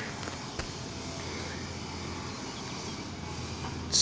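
Steady, moderate outdoor background noise with a low hum and a couple of faint clicks in the first second.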